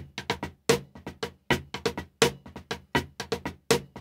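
Wooden drumsticks playing a drag-triplet rudiment on a drum. Loud accented strokes fall about every three-quarters of a second, with quieter double strokes and taps between them.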